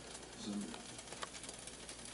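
Faint sizzling of beaten eggs steaming under a lid in a frying pan with a little added water, a low hiss with a few small ticks. A brief low hum of a man's voice comes about half a second in.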